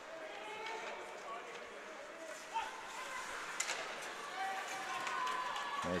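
Ice rink ambience during live hockey play: faint shouting voices of players and spectators echoing in the arena, with a couple of sharp stick-on-puck clacks in the middle.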